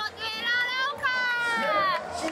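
A woman's high-pitched, excited voice calling out, ending in a long drawn-out cry that falls in pitch over the last second.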